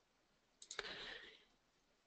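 Near silence, broken a little over half a second in by a couple of faint computer mouse clicks and a brief soft noise.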